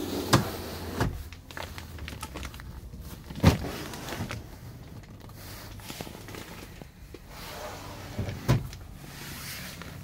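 A truck sleeper's plastic workstation lid and drawer being opened and shut by hand: a few knocks and latch clicks, the loudest about three and a half seconds in, over a steady low hum.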